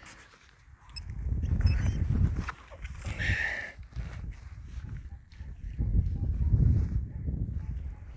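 Minelab metal detector giving a short, high-pitched target tone about three seconds in as its coil is swept over the dug hole: the target is still in the hole. Low rumbling noise on the microphone comes and goes around it.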